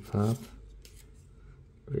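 Thin trading cards rubbing and slipping against each other as they are slid one at a time from the front of a small hand-held stack to the back, faint soft rustles with a few light ticks. A short spoken word comes just after the start and another near the end.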